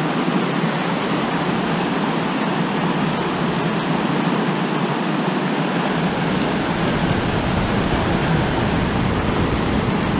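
Glacier-fed creek rushing through boulder rapids in whitewater, a steady loud roar of water. A deeper low rumble joins in about six seconds in.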